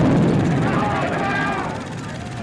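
A sudden loud low rumble, like a blast, that slowly fades over two seconds, with a wavering voice-like sound over it.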